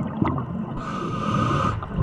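Scuba diver breathing through a regulator, picked up underwater by the camera: a low, irregular bubbling rumble throughout, with one hissing inhalation about a second in that lasts about a second.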